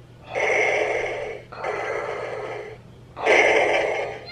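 Darth Vader voice-changer helmet making Vader's breathing sound, three long breaths of about a second each, in and out.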